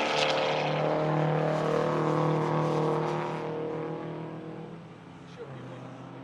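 Pre-war sports racing car's engine running hard at speed: a steady note that fades away over the second half as the car draws off. A fainter engine note from another car comes in near the end.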